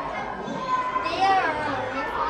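Children's voices talking indistinctly, with no clear words.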